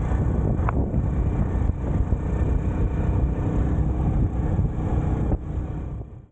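Steady rumble of wind and road noise while riding on a motorcycle taxi, dropping a little in level near the end.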